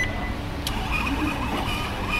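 Payment terminal's built-in receipt printer starting about two-thirds of a second in, a steady high-pitched whirring buzz as the receipt feeds out, over a low hum of room noise.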